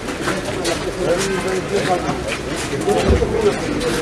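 Crowd of men talking at once outdoors, a steady overlapping murmur of many voices with no single speaker standing out.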